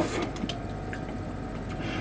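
Quiet room tone with a steady low hum, broken by a couple of faint clicks of a computer mouse, one about half a second in and one near the end.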